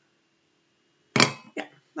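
Near silence for about a second, then a woman's voice saying "yeah".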